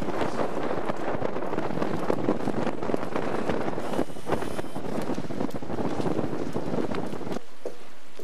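Wind buffeting the camcorder microphone: a steady rushing noise with irregular gusty spikes, which cuts off abruptly near the end.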